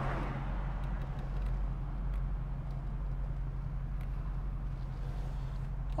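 1975 AMC Hornet's 304 cubic-inch V8 idling steadily, heard from inside the cabin as a low, even drone with no revving. A few faint clicks sound over it.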